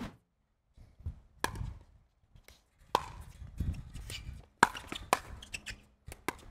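Pickleball paddles hitting a plastic ball in a doubles rally: four sharp pops, the first three about a second and a half apart and the last two in quick succession.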